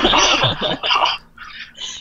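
A woman laughing in breathy bursts, half-speaking a word through the laugh, then trailing off into a few quieter breaths.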